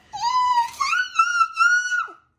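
A young child's voice holding one long, high-pitched note that steps up in pitch about a second in, with small breaks, then cuts off.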